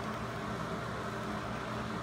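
Steady low hum with an even hiss and no distinct event: background machine or room noise.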